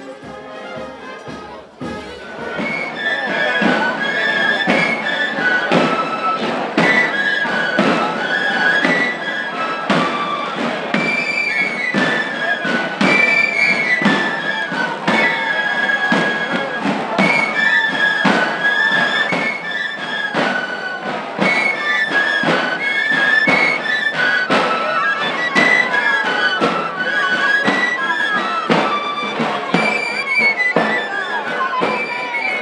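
A group of tamborileros playing a traditional Andalusian tune on three-hole pipes (flautas) and rope-tensioned tabor drums, a high pipe melody over steady drumbeats. It grows louder about two seconds in.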